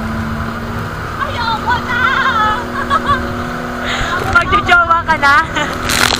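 Outrigger boat's engine running steadily under wind and the splash of a rough sea, with people's voices calling out over it about a second in and again near the end.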